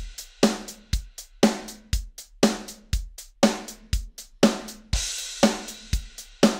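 MIDI drum beat played through the MT-PowerDrumKit sampler with every velocity maxed out and the notes straight on the grid: kick and snare alternating about twice a second under hi-hat and cymbal, every hit equally hard. It sounds very robotic and not very human, the unhumanized baseline.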